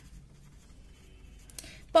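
Faint scratching of a pen on paper as a word is handwritten, slightly more audible near the end.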